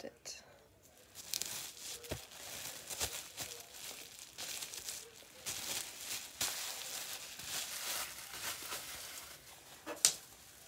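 Packaging crinkling and rustling, handled by hand while the contents of a box are sorted through, with a couple of light knocks about two and three seconds in.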